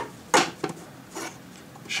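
A single short click about a third of a second in, a fainter tick after it, then quiet room tone.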